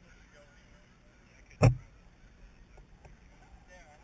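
A single short, sharp thump about one and a half seconds in, over a faint background with distant voices.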